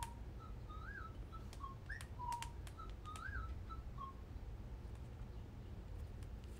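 Faint, short whistle-like chirps, about ten high notes over the first four seconds, some rising and falling in a small arch, with a few light clicks between them.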